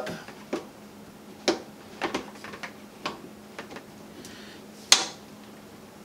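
Plastic sink drain pipes knocking and clicking as the trap and its joints are pushed back together and shifted to line up: a handful of short sharp knocks, the loudest a second before the end.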